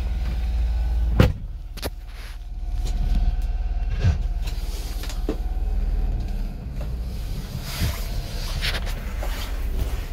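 Honda Acty mini truck's small three-cylinder engine running while still warming up, heard from inside the cab as the truck is moved off slowly. A sharp clunk comes about a second in, after which the engine note drops and then comes back up.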